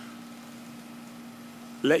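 Steady electrical hum with a single low tone, from an outdoor air-conditioning condenser unit running; a man's voice comes in at the very end.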